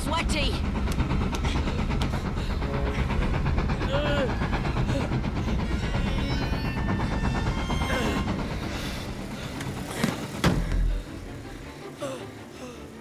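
Film soundtrack of a steam train passing close: a steady heavy rumble, with boys' voices and orchestral music over it. A sharp loud knock comes near the end, after which the train noise drops away.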